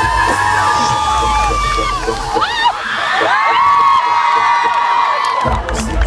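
Large arena crowd cheering and screaming, with many overlapping high-pitched shrieks, over a live band. The band's bass drops out about two seconds in and comes back shortly before the end.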